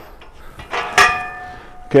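Galvanised steel sheep-yard gate swung shut, clanging once against its frame about a second in, the metal ringing on for most of a second.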